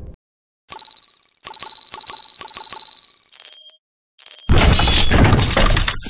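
Logo ident sound effects: a bright ringing chime hit about a second in, then a quick run of about six ringing metallic chimes and a short high tone, followed by a loud, dense crashing swell from about four and a half seconds that drops away near the end.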